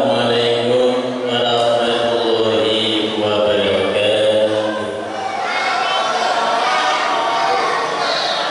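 A man's voice chanting a recitation in long, held melodic phrases, amplified through a microphone; one phrase ends and a new one begins about five seconds in.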